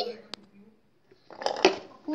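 A sharp click about a third of a second in, then a brief moment of voice and another knock about one and a half seconds in: kitchen containers being handled on a counter.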